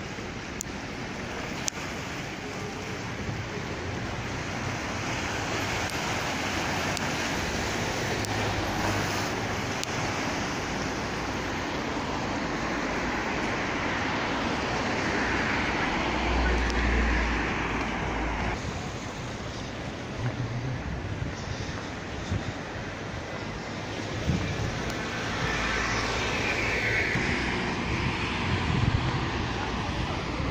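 Road traffic on a busy street, a steady noise of passing cars that swells twice, about halfway through and again near the end.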